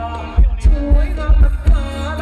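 Loudly amplified Thai luk thung dance music from a band, with a heavy bass drum thumping about three times a second under a melody line.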